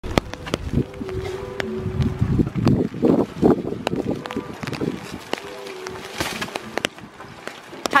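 Branches of a cut Christmas tree rustling and scraping as it is dragged out of a stack of trees and stood upright, with many small ticks and taps. The rustle is loudest about three seconds in, and a faint steady hum comes and goes under it.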